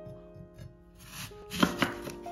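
A large kitchen knife slicing down through a whole raw apple. A crisp crunching starts about halfway in, then two sharp knocks close together near the end as the blade meets the wooden cutting board.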